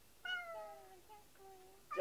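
Domestic cat meowing: one long meow that falls in pitch, beginning about a quarter second in and trailing off into fainter, lower calls, with another meow starting at the very end. It is the lonely crying of a cat left home alone.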